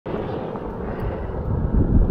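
Wind blowing across a handheld camera's microphone: a steady noisy rush, strongest in the low range, growing a little louder near the end.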